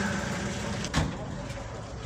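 Steady low rumble of an idling truck engine, with one sharp knock about a second in.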